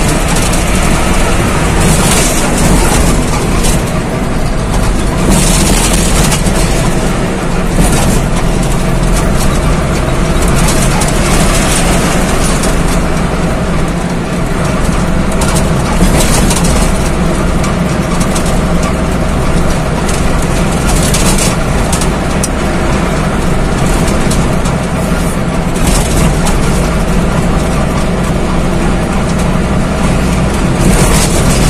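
Engine and road noise heard from inside a large vehicle's cab cruising at highway speed: a steady low engine drone under a hiss of tyre and wind noise that swells briefly every few seconds.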